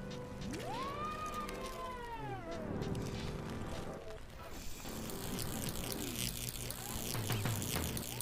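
Horror-film soundtrack: a steady low music drone with tones that swoop up and fall away, joined about halfway through by a harsh high hiss with fine crackles.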